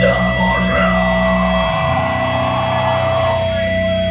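Live heavy metal band playing held, ringing electric guitar and bass notes through a PA, loud and steady, with the low notes changing to a new pitch about two seconds in. A voice is briefly heard near the start.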